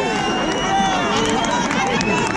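Concert audience calling out and cheering, many voices overlapping at once, with no band playing.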